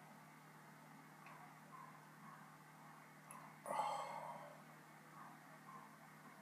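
A single short, sudden breath noise from a person, starting a little past halfway and fading over about a second, over faint room noise.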